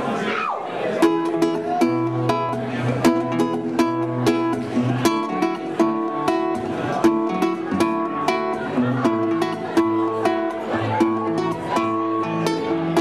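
Solo acoustic guitar playing an instrumental picked intro, starting about a second in: a steady run of plucked notes over a repeating bass note.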